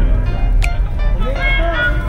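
Background music: a song with a sung vocal over a heavy, constant bass, with a sharp percussive hit about halfway through.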